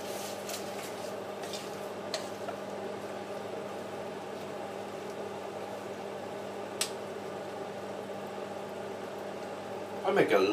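Steady mechanical hum, like a kitchen appliance or fan motor running, with a faint click about two seconds in and a sharper click near seven seconds.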